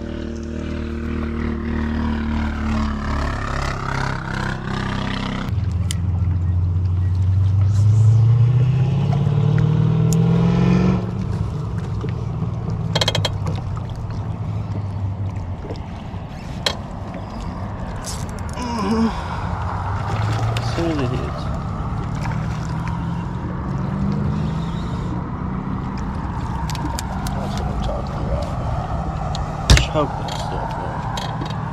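A motor engine running, its pitch dipping and then climbing steeply about six to eleven seconds in before settling, with a few sharp clicks along the way.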